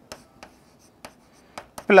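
A stylus tapping and scraping on an interactive display's glass as an equation is written by hand: about five sharp, short taps at irregular intervals over faint scratching.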